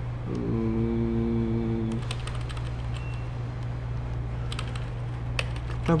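Scattered clicks of computer keyboard keys being pressed while a manual page is scrolled in a terminal, over a steady low hum. Early on a man hums a short "mmm" for about a second and a half.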